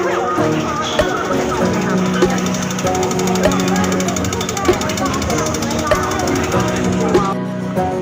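Background music: held notes over a steady beat, with a voice in it.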